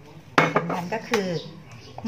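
Two sharp clinks of dishes, about three quarters of a second apart, as a bowl is handled and lifted off a tray of ingredients. The first clink is the louder.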